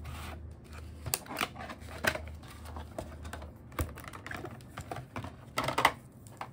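Clear plastic blister tray from an external hard drive box being handled: irregular light clicks and crinkles of stiff plastic, with a louder burst of crackling near the end as the drive is taken out of it.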